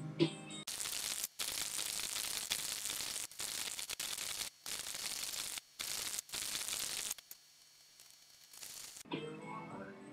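Loud static-like hiss replaces the guitar music about a second in, cut by several sudden short dropouts, then stops abruptly, leaving about two seconds of near quiet before the music comes back near the end.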